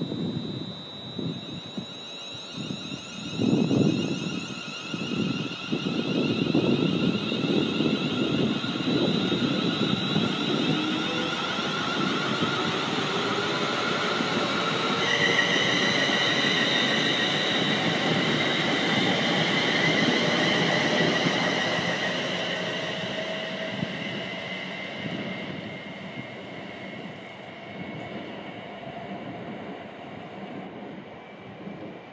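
Class 350 Desiro electric multiple unit pulling away and accelerating: a whine from its traction equipment rises slowly in pitch over the rumble and knocks of its wheels on the track. The sound builds, holds, then fades in the last several seconds as the train draws away.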